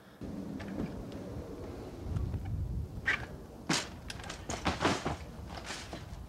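BMX bike riding a wooden ramp: a low tyre rumble, heaviest about two seconds in, then a run of sharp knocks and rattles from the bike and ramp in the second half.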